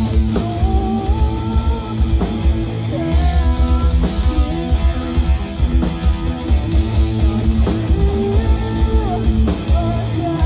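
Live heavy metal band playing: electric guitar, bass guitar and drum kit, with a steady beat in the low end and a melody line of held notes that bend in pitch.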